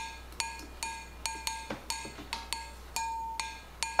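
A recorded cowbell loop playing back: a cowbell struck in a repeating pattern about two or three times a second, each strike ringing briefly.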